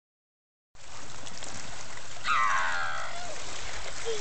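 Shallow lake water lapping on a rocky shore, a steady wash that starts after a moment of silence. About two seconds in, a drawn-out call falls in pitch over roughly a second.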